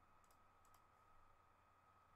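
Near silence with a faint steady hum and two faint computer mouse clicks.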